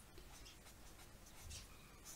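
Faint scratching of a felt-tip marker writing on paper, in a series of short strokes.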